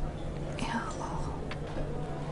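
Quiet room tone from a film scene with a faint hushed human voice or breath, a soft falling swish about half a second in and a small click around one and a half seconds.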